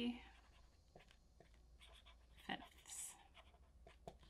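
Pen writing on a small slip of paper: faint, short scratching strokes, the clearest two about two and a half and three seconds in.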